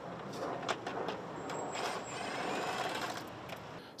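Steady background traffic noise that swells slightly midway and fades near the end, with a few faint clicks.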